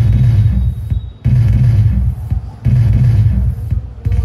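Loud bursts of sound effect from the pixel LED firework controller's speaker, with heavy bass, coming in pulses a little over a second long, about four in a row, in time with the LED firework bursts.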